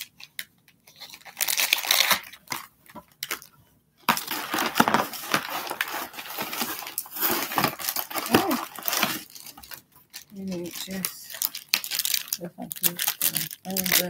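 Clear plastic bag crinkling and rustling as a packaged item is handled, in stretches with short pauses between them. A voice is heard briefly near the end.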